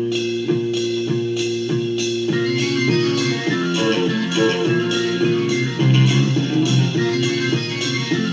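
1970 Belgian psychedelic rock song playing in its instrumental middle section: organ notes over bass and drums, with a steady beat of drum and cymbal hits about twice a second.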